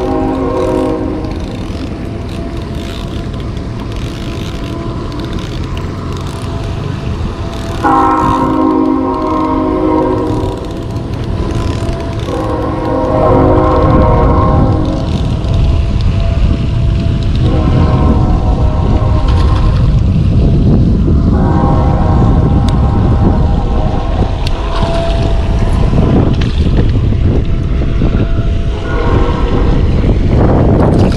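Train horn sounding a series of long, steady chord blasts, each a few seconds long with short gaps between, the last one the longest. Wind buffets the microphone underneath, growing stronger midway.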